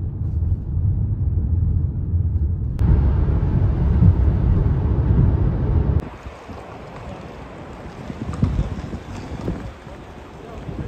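Steady low rumble of road and wind noise inside a car cabin at motorway speed, turning louder and hissier about three seconds in. About six seconds in it cuts to quieter outdoor ambience with a few faint scattered sounds.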